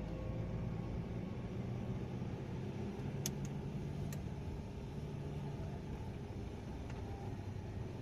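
Steady low engine and road hum of a vehicle driving slowly, heard from inside its cabin, with a few short sharp clicks around three to four seconds in and one more near the end.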